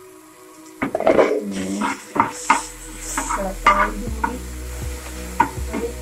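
A steel spatula scraping and knocking against a flat non-stick frying pan as chopped tomato and onion are stirred, in irregular strokes that begin about a second in, with a light sizzle of frying.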